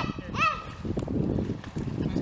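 Pool water splashing and lapping around people in the water, an irregular churning texture. Two short high calls, each rising then falling in pitch, come within the first half second.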